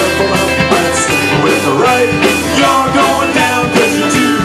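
Irish pub-rock band playing a song live, with a ukulele among the instruments and a steady beat.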